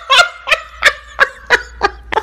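A cackling meme laugh sound effect: a rapid run of short pitched pulses, about three a second.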